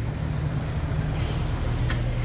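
Street traffic: a steady low engine rumble from motor vehicles on the road, with a short click near the end.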